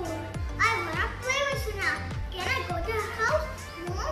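A young boy talking, telling a story in English, over background music with a regular low beat.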